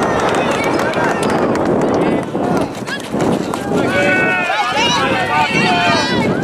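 Several voices shouting and calling out across a soccer field during play, overlapping, with the loudest calls about four to five seconds in.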